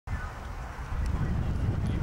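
Wind rumbling on the microphone, growing louder about a second in, with a horse cantering on turf.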